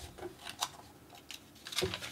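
Pages of a paper instruction booklet being handled and turned: a few soft ticks and rustles of paper.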